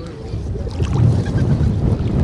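Wind buffeting the microphone in a rough low rumble that grows louder about half a second in, over the wash of small waves on a pebble shore.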